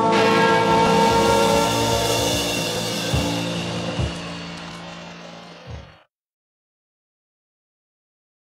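A live rock band's closing chord ringing out and slowly fading, with three low thumps as it dies away. The sound then cuts off abruptly to silence about six seconds in.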